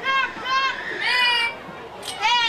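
High-pitched children's voices calling out three times with no clear words, each call rising and falling in pitch, the third longest.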